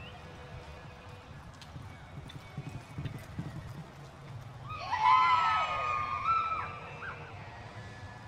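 A horse whinnying loudly for about two seconds, starting a little under five seconds in, its pitch rising and then falling. Softer hoof thuds in the arena dirt come before it.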